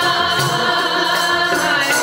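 Sikh kirtan: voices singing a hymn together to harmonium accompaniment, with tabla strikes underneath.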